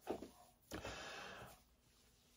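Nearly silent pause in speech: quiet room tone with a faint soft hiss lasting under a second near the middle.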